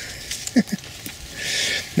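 A short, low voiced grunt from a man about half a second in. Then, near the end, a brief rustling hiss of about half a second, as foliage brushes past the moving camera.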